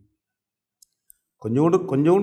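Near silence broken by two faint, sharp computer-mouse clicks about a second in, then a man starts speaking.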